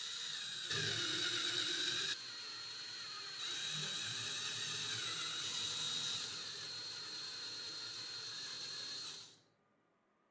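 Power drill spinning a 12 mm spade bit as it bores into a softwood board: a steady high whine whose loudness steps up and down several times, cutting off about nine seconds in.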